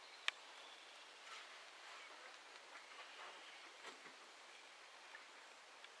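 Faint, scattered duck calls over a quiet background hiss, with a single sharp click just after the start.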